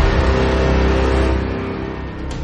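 Dramatic transition sting from a TV news programme: the ringing tail of a heavy hit, with sustained low tones fading slowly.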